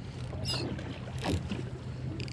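Steady low hum on a fishing boat under wind and water noise, with a brief high gliding chirp about half a second in and a short rustle a little over a second in.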